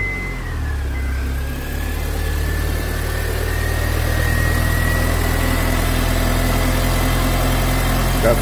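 2004 Honda Civic's 1.7-litre four-cylinder engine idling steadily just after starting, with a thin high whine over it that dips about half a second in and then slowly rises.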